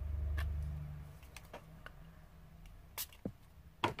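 Light, scattered clicks and taps of a paintbrush and small paint pot being handled while water is worked into a shimmer paint, after a low rumble in the first second.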